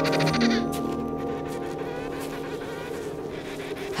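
Emperor penguin calling, a rapidly pulsing, buzzy call with many overtones that ends under a second in, with fainter calls about two seconds later, over sustained orchestral music. It is a female's contact call to find her mate among the look-alike fathers.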